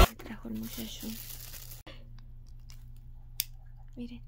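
Faint sizzle of ground beef and onions frying in a pan, cutting off suddenly after about two seconds; then a low steady hum with one sharp click.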